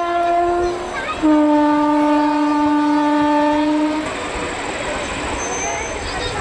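A woman's voice through a microphone holding two long sung notes without vibrato, the second lower than the first, ending about four seconds in; then a murmur of voices.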